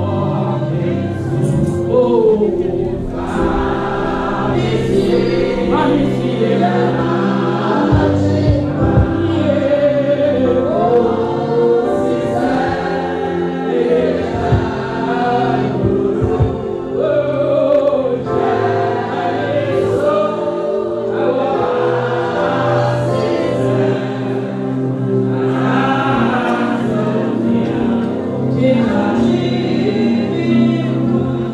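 Gospel song sung by a group of voices with a woman leading on a microphone, over sustained low instrumental accompaniment, continuous throughout.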